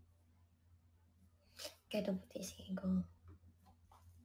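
A woman's voice saying a short, soft phrase about one and a half seconds in, over a faint steady low hum.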